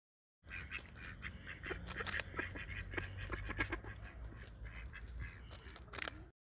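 Faint outdoor recording at the water's edge, starting about half a second in: a steady low rumble with many small scattered clicks and a few animal calls.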